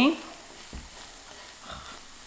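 Sauerkraut and chili flakes frying in a pan, a faint steady sizzle as they are stirred, with a couple of soft ticks of the utensil.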